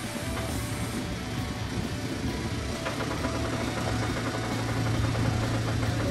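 Diesel engine of a JCB telehandler running steadily while its boom holds a raised wall frame.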